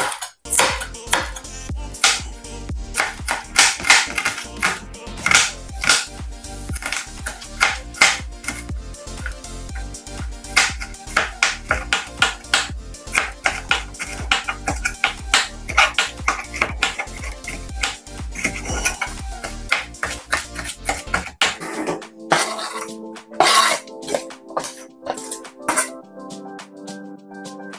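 Chef's knife chopping an onion on a plastic cutting board: a quick, uneven run of sharp chops, with a few louder knocks near the end. Background music plays throughout.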